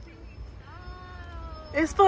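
A faint, drawn-out high-pitched voice, then a much louder high-pitched squeal that bends up and down near the end.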